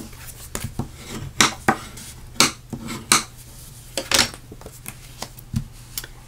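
White cardstock being folded and creased with a bone folder: the card rustles, with several sharp clicks and taps at irregular intervals as the folder and the card knock against the work surface.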